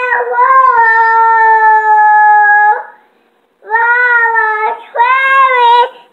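Young child singing wordless notes in a high voice: a long, steady held note, a brief pause, then more sliding notes.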